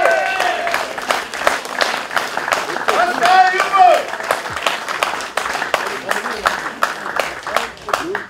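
A small crowd clapping steadily, with a voice calling out over the applause a few seconds in.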